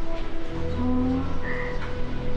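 Background film score of soft, long held notes, with a low drone coming in about half a second in.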